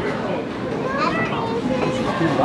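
Indistinct chatter of several people talking over one another in a bowling alley, with no clear words.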